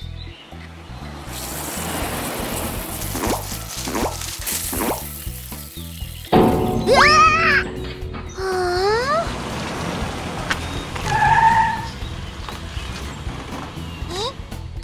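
Cartoon background music. Over it, water pours from a watering can for a few seconds. About six seconds in comes a sudden cartoon sound effect with quick rising, whistle-like glides.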